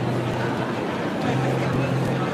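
Live malambo footwork: a dancer's boots stamping and tapping on wooden stage boards, heard through a dense, noisy hall ambience with a low steady hum in patches.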